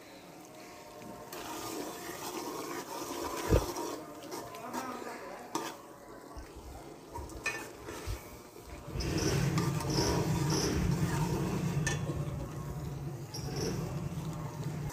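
Steel ladle stirring peas masala in a steel cooking pot, with a few sharp knocks of metal on metal. About nine seconds in, a steady, louder low rumbling noise comes in and holds.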